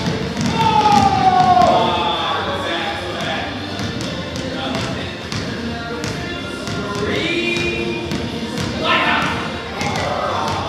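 Several basketballs bouncing irregularly on a hardwood gym floor as a group of children dribble, mixed with children's shouts and squeals.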